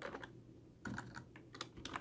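Typing on a computer keyboard: faint keystrokes coming in a few short runs.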